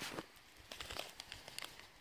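Faint handling noise of a phone being set down: light rustles and a few small clicks.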